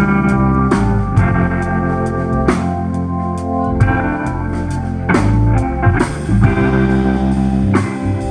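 A live rock band playing an instrumental passage on electric guitar, bass guitar, drum kit and keyboard, with no singing.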